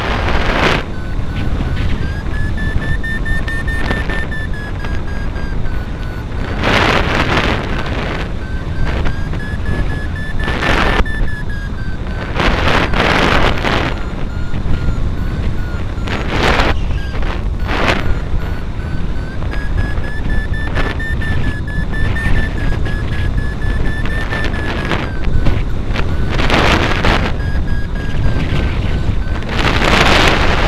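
Wind rushing over the microphone in a hang glider's flight, with several short louder gusts. Through it a variometer beeps rapidly, its pitch drifting slowly up and down with the glider's climb and sink.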